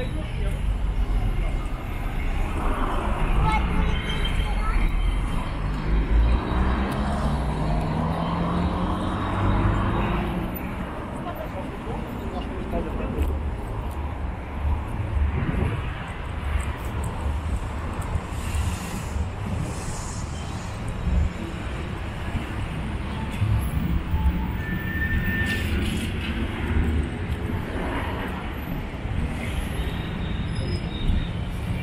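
City street ambience: car traffic on the road with passers-by talking, the talk clearest in the first ten seconds, over a steady low rumble.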